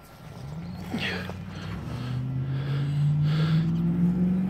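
A vehicle's engine hum growing steadily louder and rising slowly in pitch, as of a vehicle approaching, with a brief faint higher sound about a second in.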